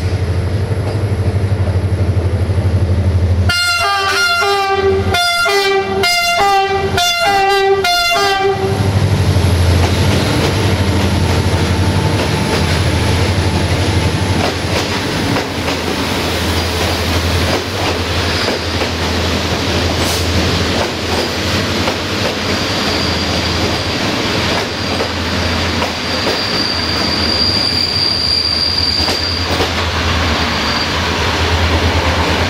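Diesel locomotive 65-1300-6 running past with its engine rumbling, sounding its horn in a quick series of about seven short blasts a few seconds in. Its passenger carriages then roll by with wheels clattering over the rails and a thin wheel squeal near the end.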